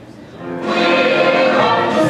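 Live pit orchestra music for a stage musical, starting up after a brief lull and swelling to full loudness about half a second in.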